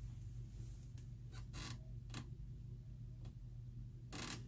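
Quiet room with a steady low hum and about five faint, scattered clicks and taps.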